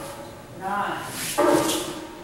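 Martial arts students shouting short, loud drill calls during a walking staff drill: a brief call just under a second in, then a longer held shout about one and a half seconds in.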